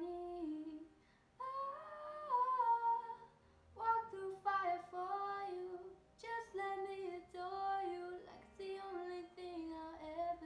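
A woman singing a pop song solo without accompaniment, in sung phrases broken by short pauses for breath.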